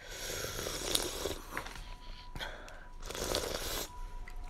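A person slurping hot soup in three breathy sips, drawing in air to cool it.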